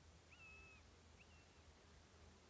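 Near silence with two faint whistled bird calls: the first about half a second long, rising quickly and then holding one pitch, the second shorter, about a second in.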